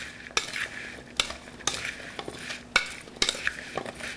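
Sliced radishes being stirred with salt in a plastic mixing bowl with a plastic slotted spoon: a wet rustling scrape, with the spoon knocking sharply against the bowl about every half second to a second.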